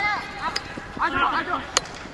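Men's voices shouting, with two sharp clacks of lacrosse sticks striking, one about half a second in and one near the end.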